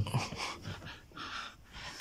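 A person breathing close to the microphone: two soft breaths about a second apart.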